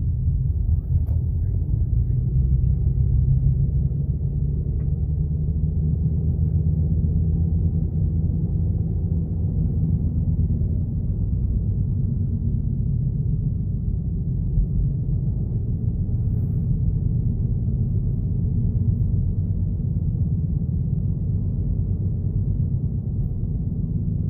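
Steady low engine and road rumble heard from inside a moving car's cabin.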